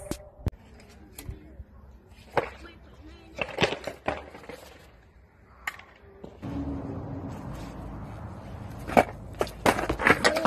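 Skateboard deck and wheels knocking and clattering on concrete during falls: a string of separate sharp knocks, the loudest near the end. A steady background rush comes in about six and a half seconds in.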